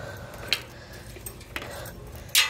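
Light metallic clicks: one sharp click about half a second in and a softer one near the end, over a faint steady background.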